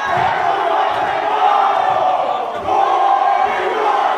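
A large group of voices chanting and shouting together in unison.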